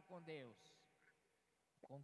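A voice trails off with a falling pitch in the first half second, then near silence: room tone.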